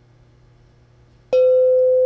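Woodstock Chimes Awakening Bell, a metal tube on a wooden stand, struck once with its padded mallet a little past halfway. It rings with one clear, steady tone; a few fainter higher overtones die away quickly while the main tone sustains.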